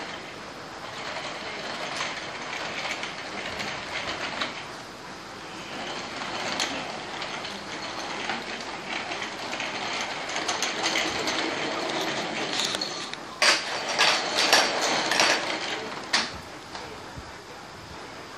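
Plastic baby walker rolling on a hardwood floor: a continuous rattling rumble of its wheels that swells and fades as it moves. Near the end comes a quick run of sharp, loud knocks.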